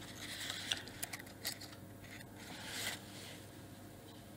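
Faint handling sounds: light clicks and soft rustles as a pair of metal jeweller's tweezers and a small piece of jewellery are picked up and worked in the hands.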